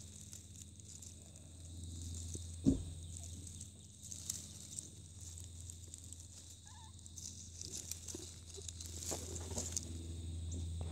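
Faint rustling and crackling of dead leaves and grass as a hand moves among the kittens in the den, with one sharp thump about three seconds in, over a steady low hum.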